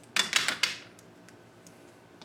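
Plastic dry-erase markers clattering against a whiteboard's marker tray as they are set down: a quick run of clicks and clacks in the first half second, then a few faint ticks.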